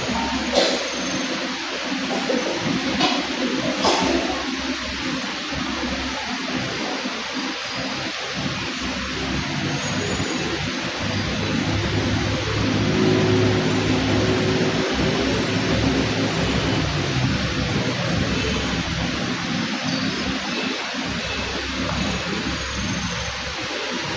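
Steady rushing background noise in a large church hall, with a few soft knocks in the first few seconds and faint low held tones through the middle.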